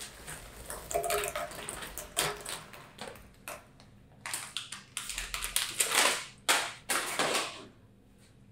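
Crunchy Garidakia puffed snacks pouring from a plastic bag into a glass bowl: a run of crisp rustles, patters and crackles as the pieces tumble and settle, loudest near the end.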